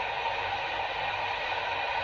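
Steady hiss over a faint low hum inside a truck's cab while it is being driven.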